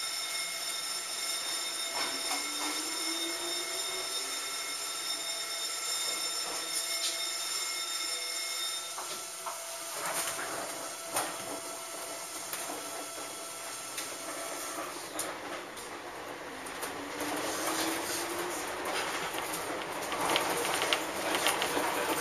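Electric commuter train heard from on board as it pulls away. A motor hum rises in pitch as it accelerates, then the wheels click and clatter over rail joints and points, growing louder near the end.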